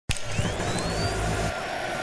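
Sound effect of a logo intro: a steady whooshing rush like a jet, with a thin whistle rising in pitch during the first second and a low rumble that drops away about halfway through.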